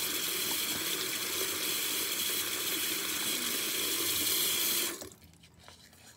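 Bathroom sink tap running in a steady stream into the basin, shut off abruptly about five seconds in.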